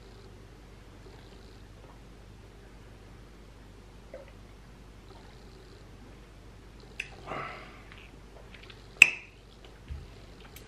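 Quiet room tone while a man sips from a glass, with a faint click and a short breath about seven seconds in. About nine seconds in comes a single sharp clack as the glass is set down on the table.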